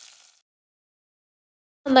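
Near silence: a faint sizzle of oil with urad dal and curry leaves in the pan fades out in the first moment, then the track goes dead silent until a voice starts at the very end.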